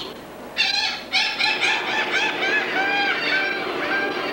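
Seagulls calling from a film soundtrack played in a theatre, a quick run of short arched cries, several a second, starting about half a second in.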